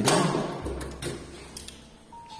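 Apartment front door pulled shut with a loud thud right at the start, followed by a couple of lighter clicks of its latch.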